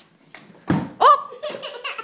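Small children laughing in high-pitched bursts, after a single thump a little before the first laugh.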